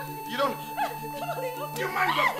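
Several excited voices talking over each other in short, quick bursts, over a steady low background-music drone.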